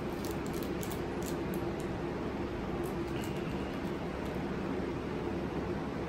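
Steady low room hum, with faint scattered crinkles of a wrapper being peeled off a chocolate-covered wafer bar.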